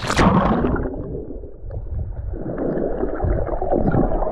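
A splash as the camera plunges into the water, then a muffled, rushing churn of water and bubbles heard from below the surface.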